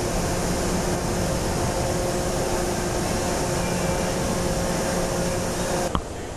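Steady drone of an aircraft engine, a constant hum under a wide hiss, which cuts off suddenly just before the end.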